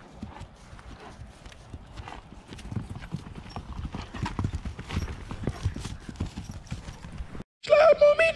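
Horses' hooves on soft dirt ground, irregular thuds and steps that grow louder from about two and a half seconds in as the horses trot past close by. Near the end the sound cuts out briefly and loud rap music with vocals starts.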